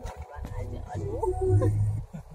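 Low rumble of a vehicle driving slowly along a rough road, growing louder toward the end, with an indistinct voice over it.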